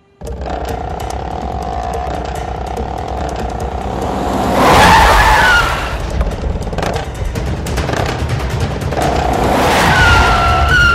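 Film action soundtrack: vehicle engines running with a steady low rumble. A louder squealing surge about five seconds in sounds like a tyre skid, all under background music.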